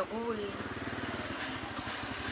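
A small engine running steadily, a low rumble with a fast, even pulse.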